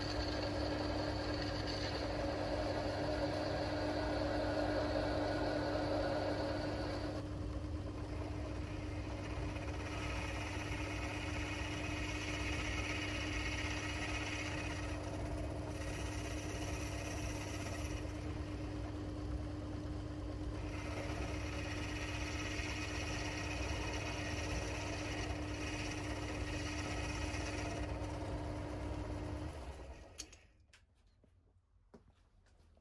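Belt-driven metal lathe running steadily while a tool turns a small metal workpiece, a steady hum with a constant tone under it. The cutting noise changes about seven seconds in and then comes and goes in stretches of a few seconds; the sound stops suddenly at the end.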